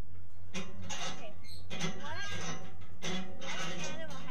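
Children's voices in three bursts of unintelligible, sliding, sing-song chatter, over a steady low hum.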